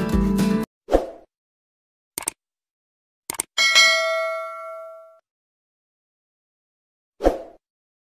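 Background music cuts off within the first second, then the sound effects of a YouTube subscribe-button animation: a soft thud, two short clicks, and a notification-bell ding that rings out for about a second and a half. Another soft thud comes near the end.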